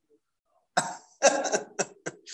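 A man coughing: a few short, loud coughs starting about three-quarters of a second in.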